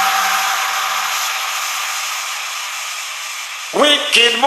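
Electro house mix in a breakdown: the bass and beat drop out, leaving a white-noise wash with a few faint held tones that slowly fades. The full beat and synth lines come back in near the end.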